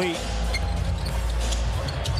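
Basketball dribbled on a hardwood court, a few scattered bounces over the steady hum of an arena crowd.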